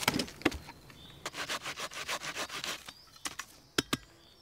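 Wooden logs knocking as they are handled and set down, then a saw cutting through wood in quick, even back-and-forth strokes for about a second and a half. A couple of sharp wooden knocks come near the end.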